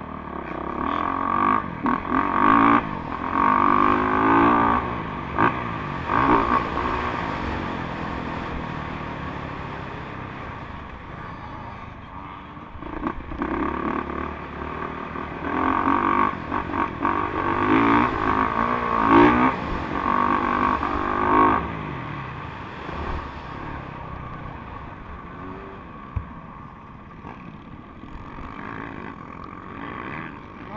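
Motocross bike engine revving up and down under hard throttle as it is ridden around a dirt track. There are two long spells of heavy throttle, the first from about a second in and the second from about the middle, with the engine easing off between them and again near the end.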